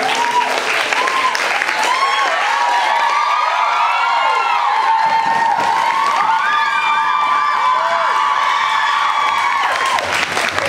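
Audience applauding and cheering at the end of a stage dance performance: steady clapping with many short whoops and a long held cheer over it.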